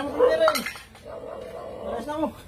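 A short burst of voice, then metallic clinking and jingling that carries on steadily to the end.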